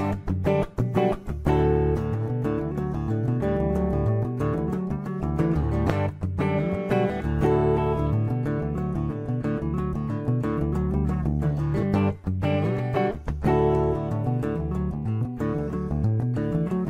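Solo hollow-body archtop guitar playing an instrumental passage of a song, picked and strummed, with short breaks between phrases about a second in and again around twelve seconds.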